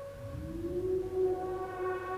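Dramatic background score: a synthesized tone swells up in pitch over about the first second, then holds steady over a low rumble.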